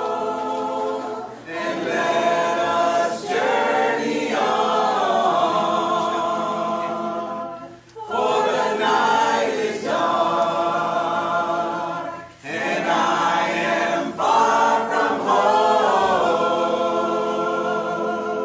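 A church congregation of men and women singing a hymn a cappella, in long sung phrases broken by short pauses for breath.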